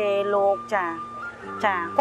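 A woman talking over background music made of steady, held tones.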